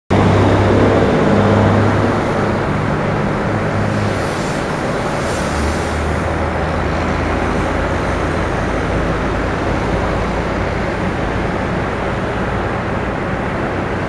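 Idling engines of traffic stopped in a highway jam: a steady low engine drone over road noise. The drone shifts lower about four seconds in.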